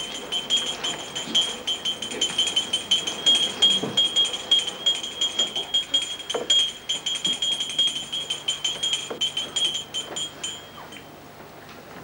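A small metal bell rung rapidly and continuously, its bright ringing tone struck several times a second; it stops about ten and a half seconds in.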